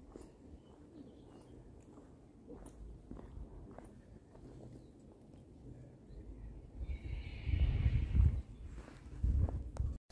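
Faint footsteps of people walking, with low rumbling surges in the second half.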